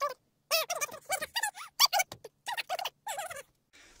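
A high, squeaky voice chattering a quick string of short nonsense syllables, each with a bending pitch, as a made-up magic incantation. The syllables stop shortly before the end.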